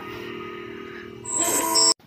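Short TV station ident music: a held chord, then a louder, brighter sting with high chiming tones about a second and a half in, cut off abruptly just before the next card.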